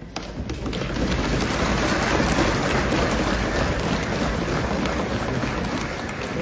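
Applause from the assembly members, a dense, steady crackle of many hands clapping and thumping, breaking out as soon as the oath of office is finished.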